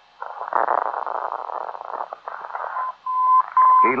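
ADF radio receiver's speaker giving a hiss of radio static as it is tuned to a 410 kc non-directional beacon. About three seconds in, the beacon's Morse code identifier comes through as a steady high beep keyed on and off, a short one followed by two longer ones.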